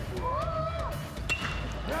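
Aluminium baseball bat striking a pitched ball: one sharp metallic ping with a brief ring, a little over a second in.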